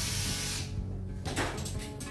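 Orthopedic drill with an oscillating saw attachment running in a burst of about a second, then a second brief burst.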